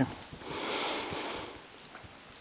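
A single breath through the nose, a soft hiss that swells and fades over about a second.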